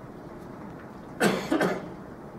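A man coughing twice in quick succession, a little past halfway through, in a meeting room.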